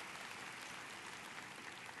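Faint audience applause, a steady even patter of many hands clapping.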